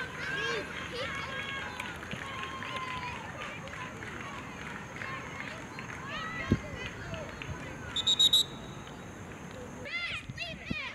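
Youth soccer players and spectators shouting and calling out across an open field. There is a sharp thump about six and a half seconds in. Around eight seconds in comes a short, loud, trilling referee's whistle.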